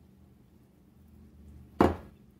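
A quiet lull, then near the end a single sharp clack of a ceramic dish set down hard on the kitchen counter, with a brief ring.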